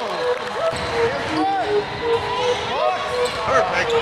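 Basketball game sounds on a hardwood court in a large, echoing hall: sneakers squeaking in short chirps, a ball bouncing, and indistinct players' voices.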